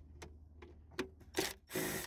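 Milwaukee M12 1/4-inch hex right-angle impact driver running in two short bursts, a brief one about halfway through and a longer one near the end, backing out a glove box latch screw. A few faint clicks come before them.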